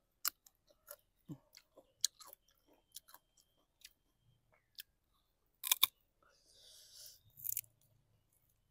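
Close-up biting and chewing of a raw, unripe green mango (mamuang bao), with crisp crunching clicks scattered through. The loudest crunch comes a little past halfway, and a short hissing noise follows near the end.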